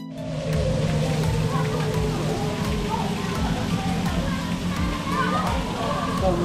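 Small artificial waterfall splashing steadily over rocks, with music playing underneath.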